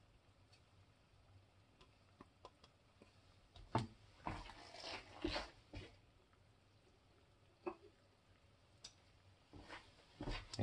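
Quiet room tone broken by handling sounds at a saucepan of melted wax: a sharp click about four seconds in, then a couple of seconds of scraping and rustling as utensils are worked in the pan, and two faint clicks near the end.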